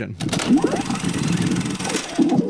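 Transition sting: a dense, rattling, engine-like mechanical whir lasting about two and a half seconds, with a few short voice-like sounds mixed in.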